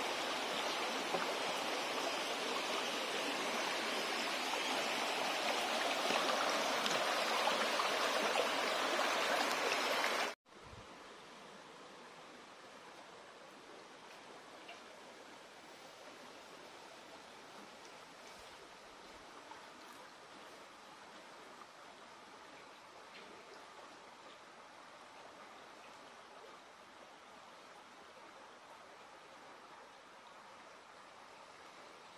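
Shallow creek running over stones, a steady rushing and trickling of water. About ten seconds in it cuts off abruptly, leaving only a much fainter steady hiss.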